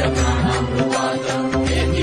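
Hindu devotional music: a mantra chanted over a steady drone with a pulsing bass and rhythmic percussion.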